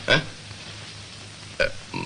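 Two short vocal sounds from a person, one right at the start and one about one and a half seconds in, with low hiss between them.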